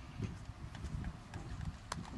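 Folding chairs knocking faintly as seated graduates stand up, over a low rumble on an open-air microphone, with a sharp click near the end.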